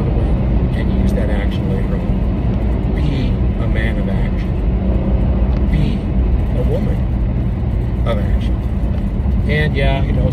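Steady low rumble of a car's road and engine noise heard inside the cabin, with a man's voice talking over it, fainter than the rumble.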